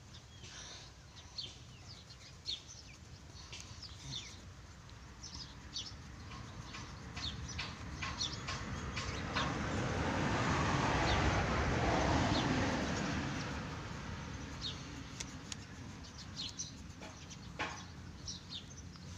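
Coloured pencil scratching on notebook paper in many short strokes, heard as quick high scratches throughout. In the middle a broad rushing noise swells up, becomes the loudest sound, and fades away again.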